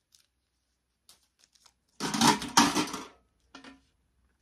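A paper sticker label is peeled off its backing: a loud ripping rasp about two seconds in, lasting about a second, and a shorter one near the end.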